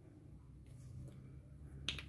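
A single sharp click just before the end, after a few faint ticks, over a low hum.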